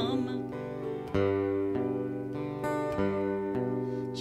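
Live worship-band music without vocals: acoustic guitar chords strummed in a steady rhythm over sustained piano chords, with the singer coming back in just after the break.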